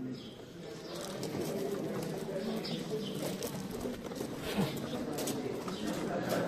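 Background murmur of distant voices, with birds calling.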